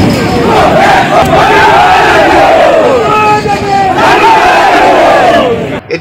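Crowd of protesters shouting together, many loud voices with long drawn-out calls, cutting off abruptly just before the end.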